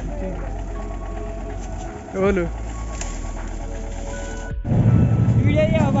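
A vehicle running with a steady low hum, with voices now and then. About four and a half seconds in, the sound cuts to a louder, denser low rumble of riding in a moving vehicle, with a man speaking near the end.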